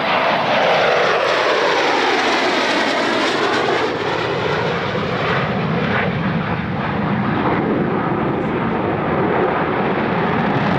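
Jet noise of MiG-29AS fighters, their twin Klimov RD-33 turbofans loud as they pass. A swirling whoosh sweeps down and back up in pitch over the first few seconds, then the sound holds as a steady, loud rumble.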